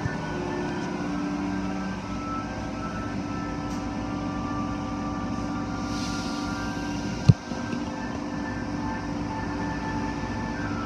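Steady rumble of automatic car wash tunnel machinery (pumps, motors and spraying water), heard through a glass viewing window. One sharp knock comes about seven seconds in.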